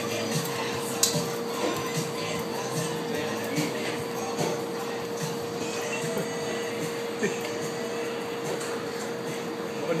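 Restaurant room noise: indistinct background voices and music over a steady hum, with a few sharp clicks.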